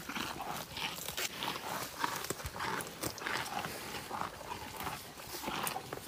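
Two water buffalo feeding on sweet potato leaves: a run of tearing and munching bites, two or three a second.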